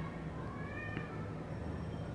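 A faint single animal call lasting under a second, its pitch rising and then levelling off, over a low steady hum.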